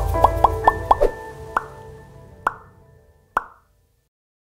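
Short channel logo jingle: a quick run of four short rising pitched notes over a low bass, then three single sharp accent hits about a second apart, each ringing briefly, fading to silence near the end.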